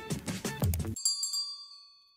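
Outro music with a steady beat cuts off about a second in, and a bright bell-like ding sound effect, the notification-bell chime of a subscribe animation, rings and fades away.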